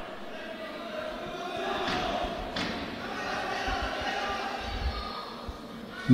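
Live sound of an amateur boxing bout in a sports hall: voices from around the ring over the hall's background noise, with dull thuds from the boxers in the ring, stronger near the end.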